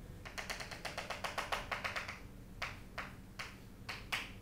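Chalk tapping against a chalkboard while a dashed line is drawn: a quick run of about fifteen taps over two seconds, then four slower single taps.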